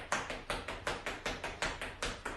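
Quick, even footfalls of sneakers on a hard floor from jogging in place with high knees, about five steps a second.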